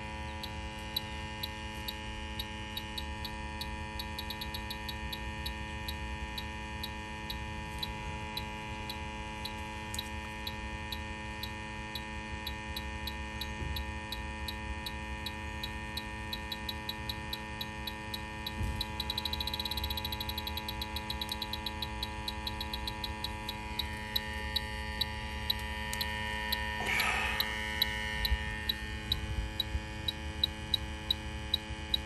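Electronic refrigerant leak detector ticking at a few ticks a second over a steady hum. Around two-thirds of the way through, the ticks speed up into a rapid run as the probe at the filter drier picks up refrigerant, the sign of a leak at the drier.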